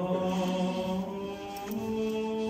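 Orthodox liturgical chant sung during the church service: voices hold one long low note, then step up to a slightly higher note near the end.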